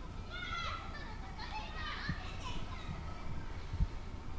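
Children's voices calling out as they play at a distance, faint and high, over a low steady rumble, with a soft bump near the end.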